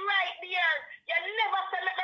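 Speech only: a woman talking steadily, with a brief pause about a second in.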